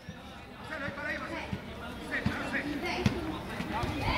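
Faint, distant shouts of players on a football pitch, with a few short dull thumps of the ball being kicked, the sharpest about three seconds in.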